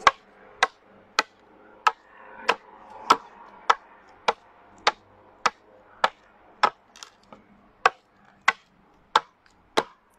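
Hand axe chopping into a wooden longbow stave, roughing it down: a steady run of about sixteen sharp strokes, roughly one and a half a second, evenly paced.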